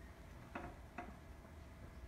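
Two faint short ticks about half a second apart as a violin and bow are settled into playing position, over quiet room hum.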